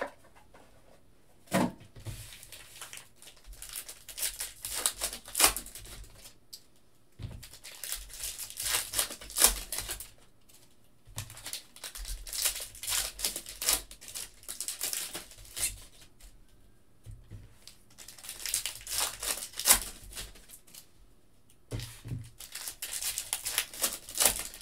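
Plastic trading-card pack wrappers being torn open and crinkled by hand, in about four bouts of a couple of seconds each with quieter pauses between, and a couple of short knocks.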